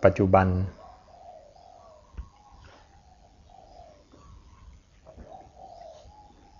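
Faint, soft cooing of a bird, a series of low calls repeating through the pause, with a single sharp click about two seconds in.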